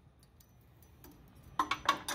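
Faint clicks and taps from a small throttle plate being handled and held against a Predator 212cc engine. A few sharper knocks come near the end.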